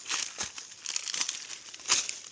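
Dry fallen leaf litter crackling and rustling in irregular bursts, with two sharper crunches about half a second in and near the end.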